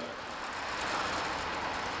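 Belt idler-pulley bearing on a Ford EcoSport engine turning, a faint steady hiss, slightly louder partway through; the mechanic suspects the bearing is blown.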